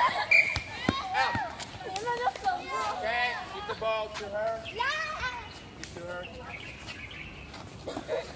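Children and a man calling and shouting over each other outdoors during a rugby passing drill. A few sharp slaps come early on as the rugby ball is caught in hands.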